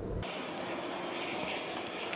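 Steady background buzz of honey bees flying around an open hive, a low, even hum with no distinct events.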